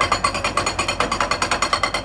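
Hydraulic breaker on a Caterpillar excavator hammering a limestone boulder to break it into smaller pieces. It strikes in rapid, evenly spaced blows, about a dozen a second.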